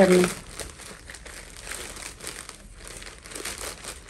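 Plastic courier mailer bag crinkling and rustling in the hands as it is pulled open, soft and irregular.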